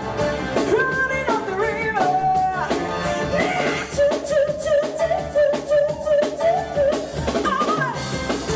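A woman singing into a microphone over a live rock band of drum kit, bass guitar and keyboard. About halfway through she holds one long note, then returns to shorter phrases.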